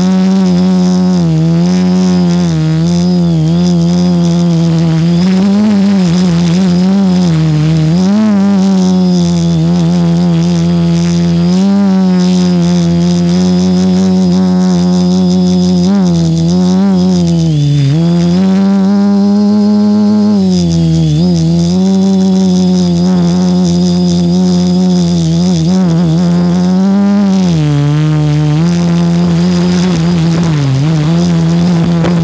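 A quadcopter's motors and propellers humming loudly right at the microphone, one pitched drone whose pitch keeps swinging up and down every few seconds as the craft climbs and holds in flight.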